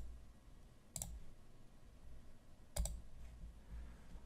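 Computer mouse button clicks: a short click about a second in and another near three seconds, over faint low room hum.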